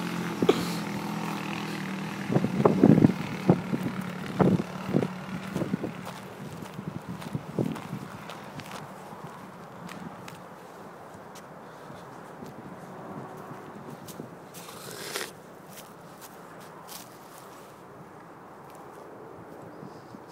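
Off-road buggy's engine running and fading as the buggy drives away, with several loud knocks in the first few seconds. After that, only faint scattered clicks and a brief rush of noise about three-quarters through.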